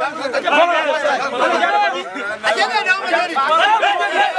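Men's voices talking over one another in lively group chatter, with one man speaking out loud above the crowd.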